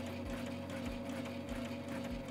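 Sailrite Ultrafeed walking-foot sewing machine stitching forward at a steady speed: a steady motor hum with a low thud repeating a little under twice a second.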